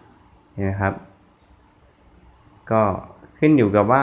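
A man's voice in short, drawn-out utterances about half a second in and again near the end, with a faint steady high-pitched whine underneath throughout.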